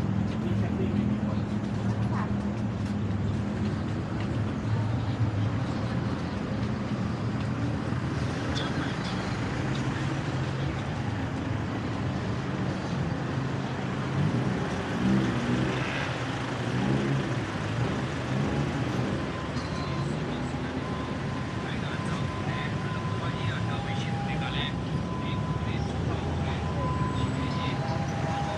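Busy street ambience: steady traffic rumble from the road alongside, with people talking in the background. A faint steady tone comes in about two-thirds of the way through.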